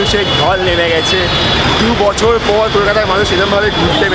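Busy city street crowd: several people talking over the steady noise of passing traffic and buses.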